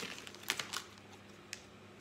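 Small clear plastic packaging being handled: a few light crinkles and clicks, most of them in the first second, and one more click about a second and a half in.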